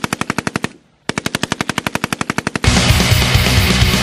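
Two bursts of rapid automatic gunfire, about a dozen shots a second, split by a brief silence just under a second in. About two and a half seconds in, loud heavy metal music cuts in.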